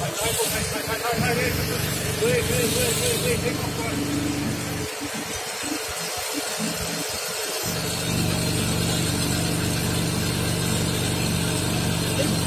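Steady engine-like hum of the machinery driving a fibre-optic cable blowing rig. The low hum breaks up and stutters in the middle, then settles to a steady, slightly louder run about two-thirds of the way in, as the hydraulic control lever is worked. Voices murmur faintly in the first few seconds.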